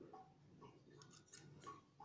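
Near silence: quiet room tone with a few faint ticks in the second half.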